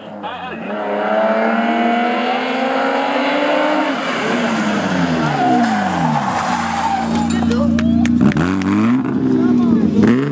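BMW E36 3 Series race car climbing to a hairpin: its engine revs rise up through a gear, then drop as it brakes and downshifts about four seconds in. The tyres squeal as it slides around the hairpin, and the engine picks up again near the end as it accelerates away.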